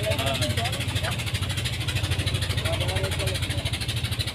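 An engine idling steadily with a fast, even low thudding beat, with faint voices talking in the background.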